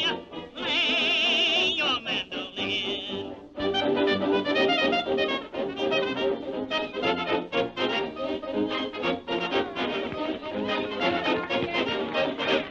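Early sound-cartoon soundtrack music: a high warbling melody with wide vibrato for the first few seconds, then a busy rhythmic band passage with brass.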